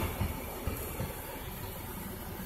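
Dodge Ram's 5.9 L Cummins inline-six turbodiesel idling, heard from inside the cab as a steady low rumble, with the air-conditioning blower hissing over it. A few light knocks in the first second.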